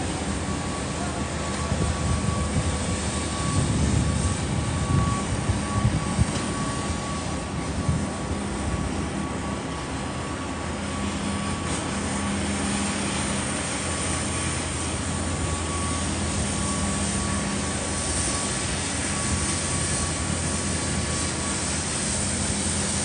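Steady outdoor city ambience: a low mechanical hum with a faint steady high whine, with louder, uneven rumbling about two to six seconds in.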